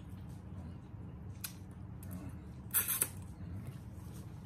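A noodle strand slurped into the mouth: a short hissy slurp about three seconds in, after a couple of fainter mouth sounds of eating, over a low steady background hum.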